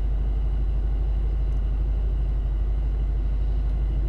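A car's engine idling steadily, heard from inside the cabin: an even low rumble with no change in speed.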